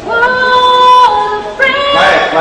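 A woman's high-pitched voice holding a long note for about a second, dipping slightly in pitch, then a second long note beginning near the end.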